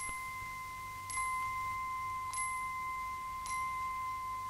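A steady, unbroken high tone with a faint, bright ting repeating about every second and a quarter.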